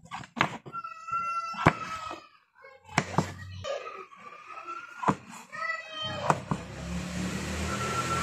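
A kitchen knife cutting mushrooms on a wooden cutting board, with several sharp taps where the blade strikes the board. Behind it is neighbours' noise: voices, then a low steady hum that comes in near the end and grows louder.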